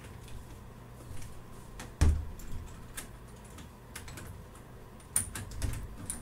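Scattered light clicks and taps, with a louder thump about two seconds in and another short cluster of knocks near the end.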